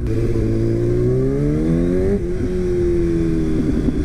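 2000 Yamaha R1's inline-four engine accelerating hard, its pitch climbing for about two seconds, dropping at a gear change and then pulling steadily again.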